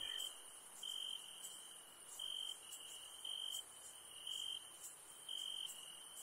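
Faint night ambience of crickets chirping, a short high chirp about once a second over a steady high-pitched hiss.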